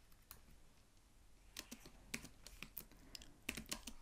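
Faint keystrokes on a computer keyboard: a single tap early on, then a quicker run of taps from about halfway through.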